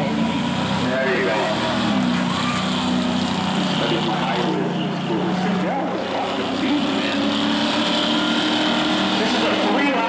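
Engines of two racing cars, a BMW sedan and a red coupe, accelerating side by side down the straight, their engine notes rising and holding, with crowd voices in the background.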